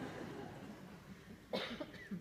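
A single short cough about one and a half seconds in, in an otherwise quiet hall.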